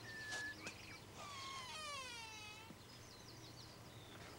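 An arched wooden door on iron strap hinges creaking open: a couple of clicks, then one long creak sinking slightly in pitch over about a second and a half. Faint bird chirps run behind it.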